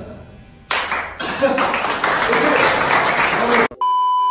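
A group of men breaking into loud cheering and shouting with clapping about a second in, after a brief lull. Near the end it cuts off abruptly into a steady high test-tone beep, the kind that goes with a TV colour-bar test pattern.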